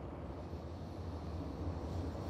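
Steady low engine drone with a faint hiss: race-track background noise of stock cars circling under caution.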